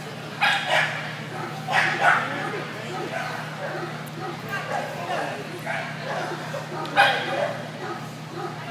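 Dog barking in sharp yips: two quick pairs of barks in the first couple of seconds, then another loud bark near the end.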